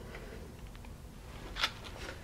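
Quiet room tone with a few faint ticks and one short, sharp tap about one and a half seconds in, from a cardboard nugget tray being handled and moved.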